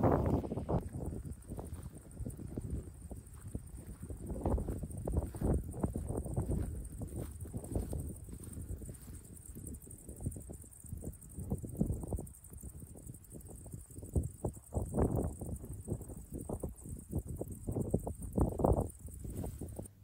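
Irregular low rumbling and buffeting, typical of wind on the microphone outdoors, with a faint steady high hiss.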